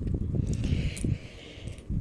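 Soft handling noise from a hand in a cloth drawstring bag: a faint rustle with a few light clicks over a low rumble.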